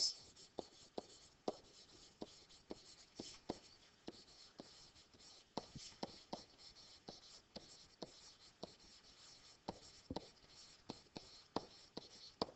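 Faint taps and light scratching of a pen stylus writing by hand on a digital writing surface, with irregular clicks a few times a second as words are written.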